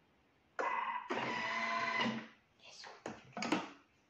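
A Thermomix food processor's motor whirring steadily for about a second and a half after a short silence, then a few sharp clicks as its lid is unlocked and lifted off the mixing bowl.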